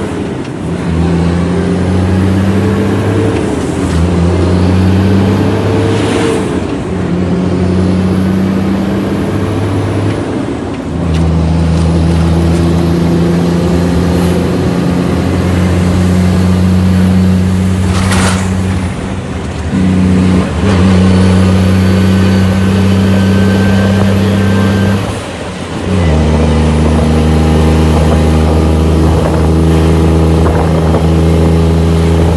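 Shacman F3000 heavy truck's diesel engine heard from inside the cab, pulling a heavy load. The engine note breaks off and picks up again several times as gears are changed, with short hisses of air, the longest about eighteen seconds in.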